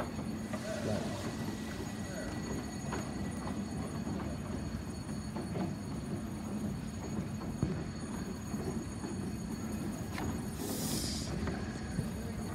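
Railway station ambience heard from an overhead walkway: a steady low hum with scattered light clicks and knocks, and a short hiss near the end.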